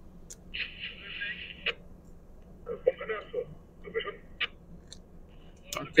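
Hand handling of an ECDIS trackball's plastic ball and housing as it is fitted back: a rubbing scrape lasting about a second, then scattered sharp plastic clicks.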